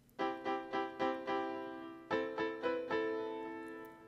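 GarageBand's Classical Grand virtual piano track playing solo: two short phrases of a few notes each, the second starting about halfway through, each note dying away. It sounds a little brighter and thinner, with more high end, less low end and more air, because its treble is raised, its bass cut and light compression added.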